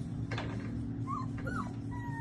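Young Central Asian Shepherd puppies whimpering: two short, high whines a little after a second in, over a steady low hum.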